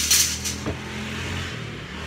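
A coil of thin aluminium screen-frame strip clattering sharply as it is let go, with a smaller metallic click a little later, over a steady low hum.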